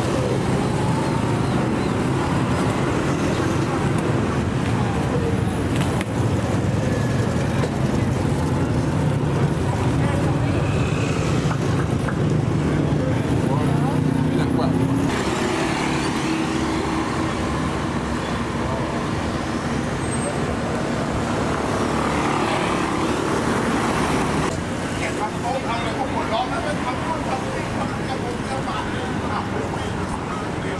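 Busy street traffic, with steady engine hum and passing vehicles, mixed with people's voices; the sound shifts abruptly twice as the scene changes.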